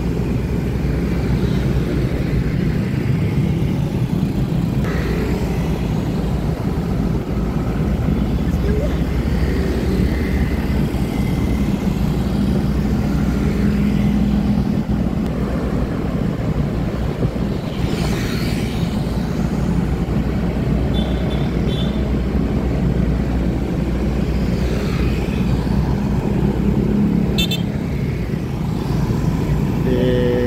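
Steady low rumble of a moving vehicle and the surrounding city traffic of cars and motor scooters, with a brief louder swell about eighteen seconds in.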